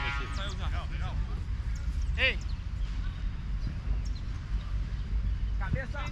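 Players' distant shouts: one call about two seconds in and several more near the end, over a steady low rumble of wind on the microphone.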